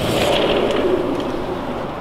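Steady noise of city traffic, let in as the balcony door is opened.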